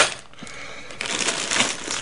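Plastic zip-lock bag packed with plastic miniatures crinkling and rustling as it is handled and set down on the table, the crackle growing busier about a second in.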